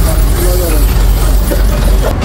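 Loud, steady low rumble of road traffic along a street, with a faint voice talking briefly in the first second.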